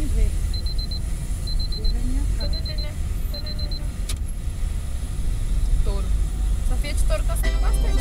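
Steady low road and engine rumble inside a car driving on a wet highway. A high electronic beep sounds in quick groups of four, about once a second, over the first few seconds. Music starts up near the end.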